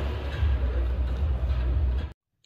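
Steady low hum with a light hiss over it: workshop background noise.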